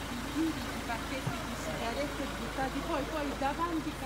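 Several people talking in the background in Italian, with a steady low hum underneath.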